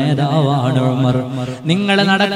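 An Islamic preacher's male voice chanting in a drawn-out, melodic style. One phrase fades about one and a half seconds in, and the next begins right after.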